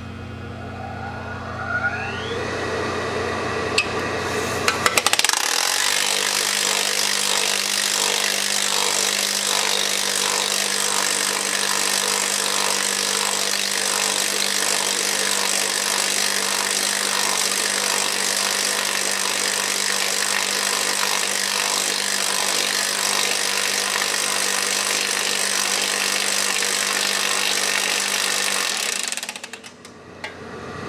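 Mechammer MarkII electric planishing hammer speeding up with a rising whine. From about five seconds in it hammers a sheet-metal test piece with a .75 radius die in a fast, steady stream of blows, and stops just before the end.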